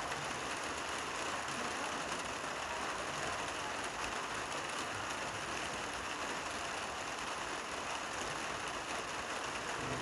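Steady rain falling, a dense and even patter.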